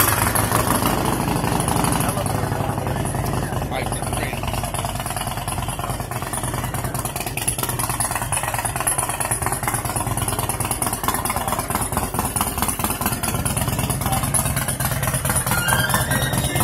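A vehicle engine idling steadily close by, under background crowd chatter.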